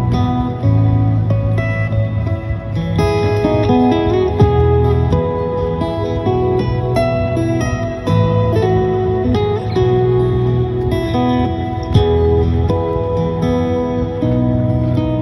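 Instrumental acoustic guitar played lap-style, the guitar laid flat across the knees, with low bass notes ringing under a plucked melody.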